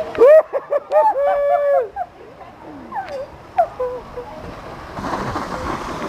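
A high-pitched voice calling out in a few long, held shouts during the first two seconds, with shorter calls a little later. From about five seconds in, a steady rushing noise takes over.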